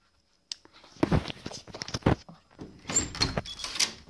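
Clattering, knocking and scraping of things being handled. It opens with a single click about half a second in, and a couple of short high squeaks come near the end.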